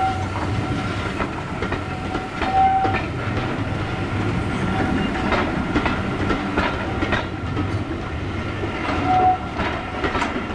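Railway passenger coaches rolling past over a small steel underbridge, wheels clicking rhythmically over the rail joints under a steady rumble. A few short high-pitched tones sound through it.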